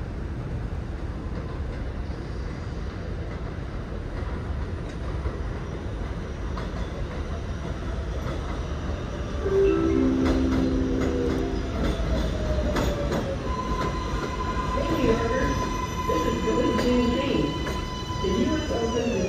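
R188 subway train running into an elevated station on the 7 line: a steady rumble of wheels on steel track that grows louder about halfway in. A brief chord of steady tones sounds as it enters, followed by a high steady whine and wheel squeal as it brakes, with scattered clicks.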